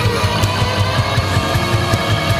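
Instrumental section of a heavy rock song: electric guitar and bass played loud over a drum kit, with sharp drum and cymbal hits cutting through.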